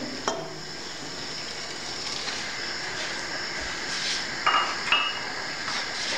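Cooking oil poured from a cup into an empty non-stick pot, under a steady hiss, with two short ringing clinks of the cup against the pot about four and a half seconds in.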